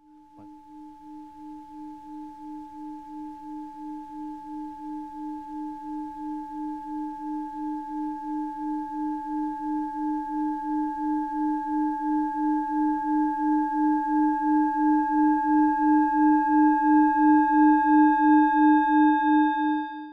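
A singing bowl sung by rubbing its rim: one sustained, pulsing tone, wavering about twice a second, with a higher ring above it. It swells steadily louder, with more overtones coming in, and stops at the very end.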